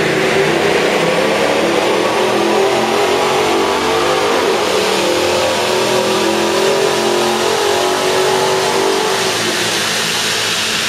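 Jeep Grand Cherokee SRT8's 6.1-litre Hemi V8 pulling under load on a chassis dynamometer, the engine note climbing steadily in pitch over several seconds, then falling away near the end.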